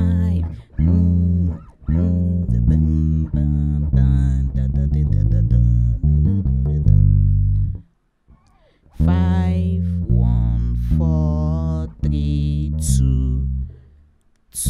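Electric bass guitar playing a gospel bass lick that begins on the fifth degree of the key, a run of plucked notes in several phrases with a brief silence about eight seconds in.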